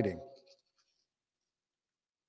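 A man's voice finishing its last word and trailing off in the first half second, then near silence.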